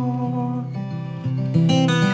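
Acoustic guitar fingerpicked, its notes ringing on, with a new chord plucked near the end.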